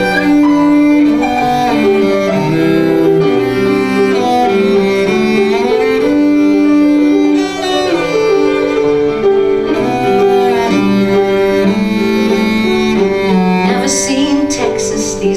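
Instrumental break in a slow country two-step song: a cello plays a melody of long, bowed held notes over piano accompaniment.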